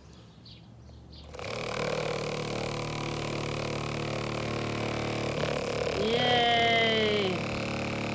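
A small 1.5 V hobby motor, weighted off-centre with modeling clay, switches on about a second and a half in and buzzes steadily, shaking the taped cup robot on its marker legs. The motor's eccentric weight is what makes the robot vibrate and wander.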